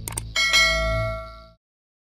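Subscribe-button animation sound effect: two quick mouse clicks, then a bright notification-bell ding that rings and fades over about a second, over a low background bed that cuts off about a second and a half in.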